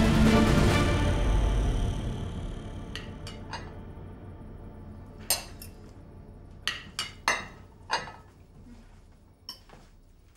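Background music fades out over the first few seconds, leaving scattered sharp clinks of cutlery against plates at a dinner table, about eight in all and unevenly spaced.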